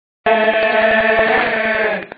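Men chanting a noha together in a sustained melody, with rapid, regular chest-beating (matam) strikes running under the voices. The sound starts abruptly about a quarter second in.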